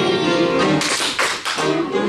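Live instrumental music in a church service, a melody with sharply struck notes.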